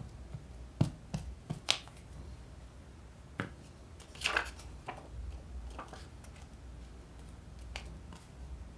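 Hands working with paper cutouts and a glue stick: several sharp clicks and taps in the first two seconds, another about three and a half seconds in, then a paper rustle as a cutout is slid and pressed down, followed by light paper handling.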